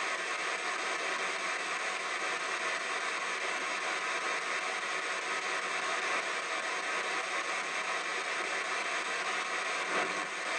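P-SB7 spirit box sweeping through radio frequencies, giving a steady hiss of radio static played through stereo speakers.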